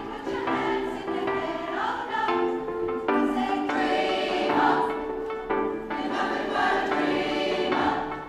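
Large women's choir singing in harmony, several voice parts holding notes together and moving from chord to chord.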